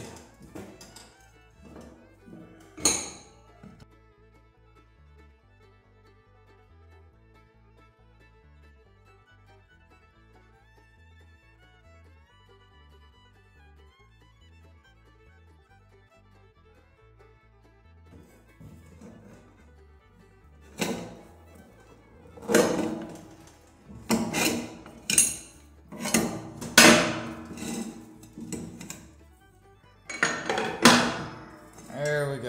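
Metal pry tools clanking and scraping against a steel tiller wheel rim as the tire bead is levered off. There is one sharp clank about three seconds in, then a quiet stretch, then a run of loud, irregular knocks through the last nine seconds.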